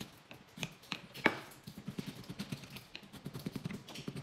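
Irregular light tapping and knocking, with one sharper, louder knock a little over a second in.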